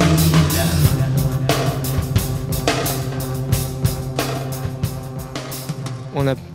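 Live pop-rock band playing an instrumental passage on drum kit, bass and guitar, with a steady beat and no singing. It grows gradually quieter towards the end.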